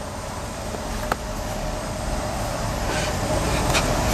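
Steady rushing air noise of a laboratory fume hood's ventilation, with low rumble from the camera being handled and carried, growing gradually louder. A single sharp click about a second in.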